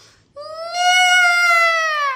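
Cartoon squirrel character's voice: one long, high, sad squeaking cry that starts about a third of a second in, rises slightly and falls away at the end.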